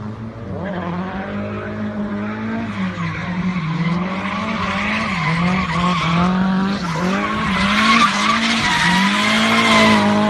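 Drift car's engine held high in the revs, its pitch dipping briefly every second or two, over tyre squeal and skidding that grows louder as the sliding car comes close.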